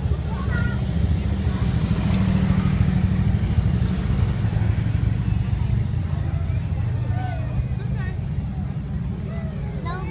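Police motorcycles riding slowly past at close range, engines running with a low rumble that is loudest a couple of seconds in and then eases off as they move away; crowd chatter and calls mixed in.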